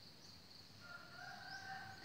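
A faint, distant bird call held for about a second, starting about halfway in, over a steady high chirring of insects.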